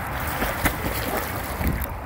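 Water splashing as a Newfoundland dog paddles through a pool, with a couple of sharper splashes, and wind rumbling on the microphone.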